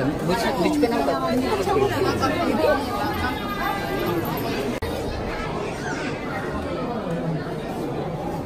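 Several people chattering and talking over one another, with a momentary break in the sound about five seconds in.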